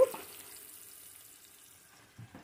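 Faint crackle of shampoo lather as hands scrub a child's soapy hair, fading away over the two seconds.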